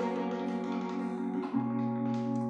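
Bandoneon and electric keyboard playing a slow instrumental introduction in sustained held chords, the harmony shifting to a new chord about one and a half seconds in.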